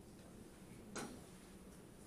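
Quiet room tone with a single sharp click about a second in.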